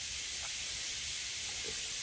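A steady, even hiss with nothing else standing out.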